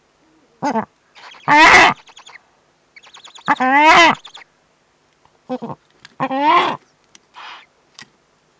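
Eurasian eagle-owls calling at the nest: a series of drawn, hoarse calls, each rising and then falling in pitch. Three loud calls come about two and a half seconds apart, with shorter, softer calls between them.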